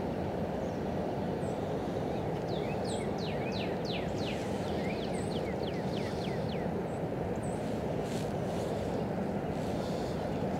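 Songbirds singing over a steady low rushing outdoor background: a quick run of descending whistled notes through the middle, with a few short high chirps before and after.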